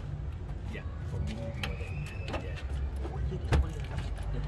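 Metal lock-picking tool clicking and scraping inside a Honda car's front door lock, then a sharp clunk about three and a half seconds in as the lock gives and the door is pulled open.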